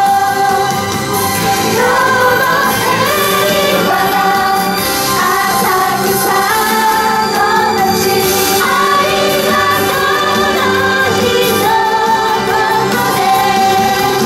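Young female singers singing a song together through headset microphones, over instrumental accompaniment, steady and loud throughout.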